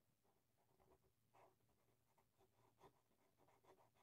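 Very faint scratching of a felt-tip marker on paper in a series of short strokes as a corner is filled in, the marker running low on ink.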